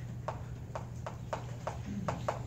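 Chalk tapping and clicking on a blackboard as a line of writing goes up: a string of short, sharp ticks, about three a second and unevenly spaced, over a steady low room hum.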